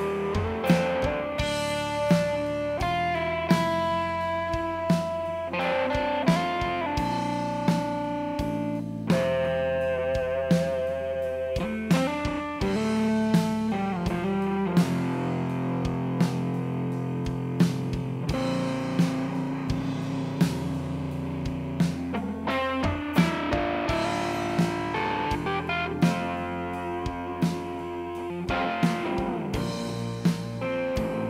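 Live band playing an instrumental passage: a guitar carries the melody in long held notes, some of them wavering, over bass and a slow, steady drum beat.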